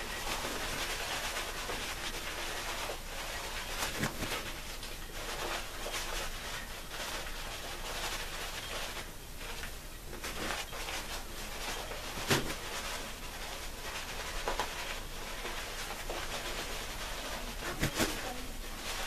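A Shave Revolution 26mm best badger shaving brush painting thick soap lather onto a stubbled face: a steady bristly rubbing, with a few short clicks, the sharpest about twelve seconds in.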